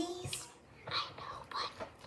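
A child whispering quietly in a few short phrases.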